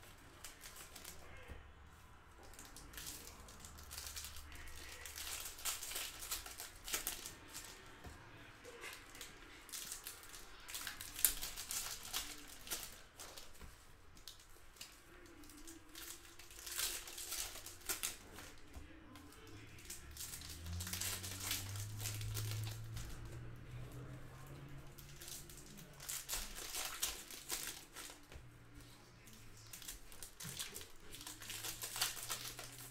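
Foil trading-card pack wrappers being torn open and crinkled by hand, a run of irregular crackles one pack after another.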